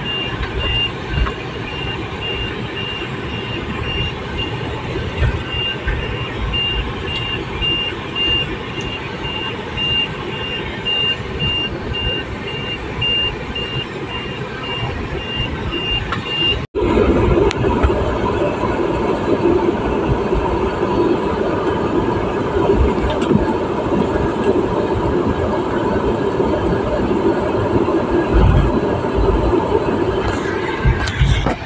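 Car running along a rough lane, heard from inside the cabin, with a high electronic warning chime beeping steadily over it. The chime stops at a sudden break about halfway through, after which the engine and road noise is louder and the chime is gone.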